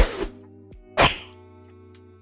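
Two sharp hit sound effects, one at the start and one about a second in, over steady background music.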